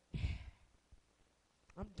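A short, audible sigh of breath into a handheld microphone, with a low pop of air on the mic, followed by a pause.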